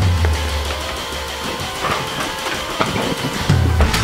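Rock music with guitar. The heavy bass drops out after about a second and comes back near the end.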